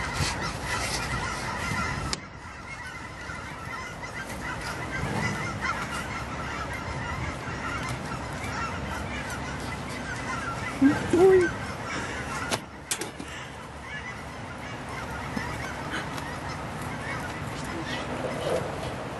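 Birds calling over and over in the background, with one louder call about eleven seconds in and a sharp click soon after.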